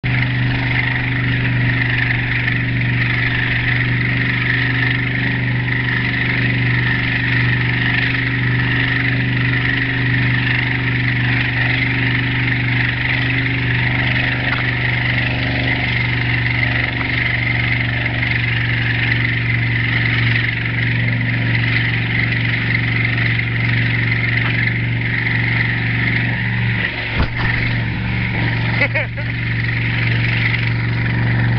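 Motorboat engine running steadily at towing speed, with a strong rush of wind and water noise over it. A couple of sharp knocks near the end.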